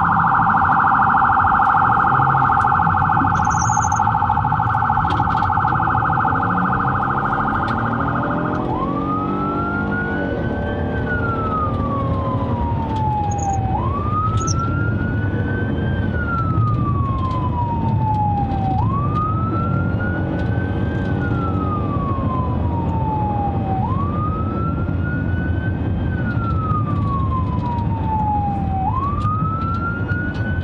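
Police car electronic siren heard from inside the moving cruiser. It sounds a rapid yelp for the first eight seconds or so, then switches to a slow wail: each cycle rises quickly and falls slowly, about every five seconds. Engine and road noise run underneath.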